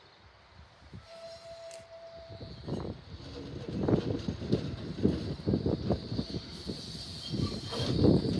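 A Nottingham Express Transit tram approaching and growing steadily louder, a rumble with irregular clunks as its wheels run over the points and rail joints, over a steady high whine.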